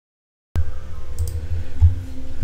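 Silence, then about half a second in a low rumble cuts in abruptly, carrying a faint steady hum and a few light clicks: the background noise of the voice-over recording before the narration starts.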